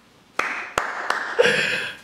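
A man laughing breathily into a close microphone, with a few sharp hand claps in the first second.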